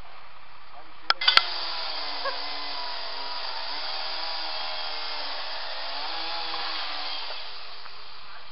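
Metal scaffold tubes knocking together in a wire crate, three sharp clanks about a second in. Then a steady mechanical whine with a slowly wavering pitch runs for about six seconds and fades out near the end.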